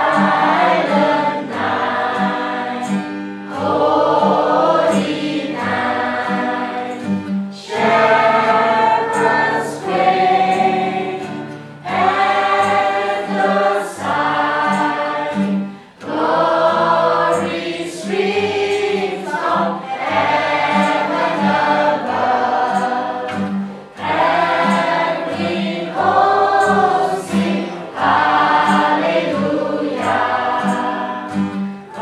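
A mixed group of children and adults singing a Christmas carol together, in phrases that pause about every four seconds, over a steady accompaniment with a regular low pulse.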